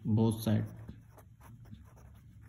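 A brief spoken phrase at the start, then a pen writing on lined notebook paper: a run of short, faint scratching strokes.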